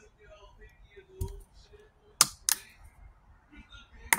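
Plastic screw cap of a drink bottle being twisted open by hand: a few sharp plastic clicks, a small one about a second in and two loud ones close together just after two seconds.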